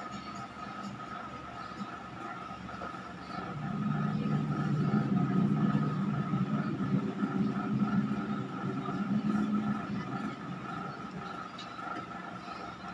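Horror film soundtrack played through a TV's speakers and picked up in the room: a low drone swells about three and a half seconds in and fades again around ten seconds, over a faint steady high tone.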